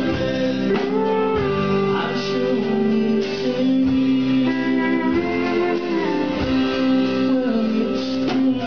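Live country band playing an instrumental break between sung lines: strummed acoustic guitar and electric guitar, with held notes that slide in pitch, as from a pedal steel guitar.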